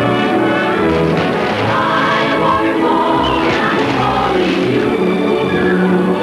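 Orchestral music with a choir singing, from the soundtrack of a 1930s Hollywood musical number.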